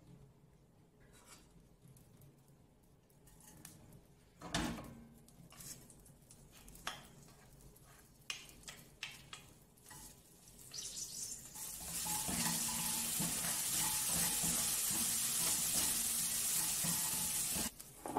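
A few light knocks and scrapes of a wooden spoon in an aluminium pot of heating pork lard. About ten seconds in, salted minced garlic goes into the hot fat and sets off a steady sizzle, which stops abruptly near the end.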